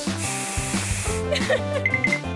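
Aerosol hairspray can spraying in one hiss lasting about a second, over background music.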